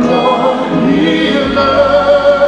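Live gospel music: several voices singing together like a choir, holding long, wavering notes.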